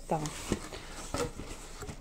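Cardboard mailer box being handled and its lid opened: a few light knocks and clicks of cardboard over a soft rustle.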